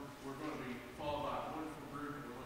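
Only speech: a man talking into a microphone.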